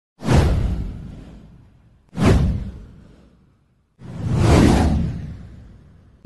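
Three whoosh sound effects for a title card. The first two come in suddenly with a deep low end and fade out over about a second and a half. The third swells up about four seconds in and fades away.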